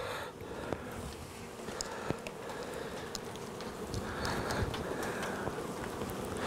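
Honeybees buzzing steadily around an open hive, with a couple of light knocks as wooden frames are handled. The beekeeper puts the bees' buzzing down to the rain.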